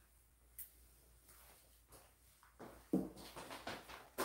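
Light handling sounds from small plastic alcohol-ink bottles on a table: a single click about half a second in, then a few soft knocks and taps in the last second and a half as bottles are picked up and set down.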